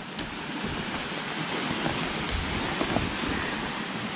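Steady rushing of a nearby stream, with a few faint handling ticks as a jacket is lifted out of a backpack.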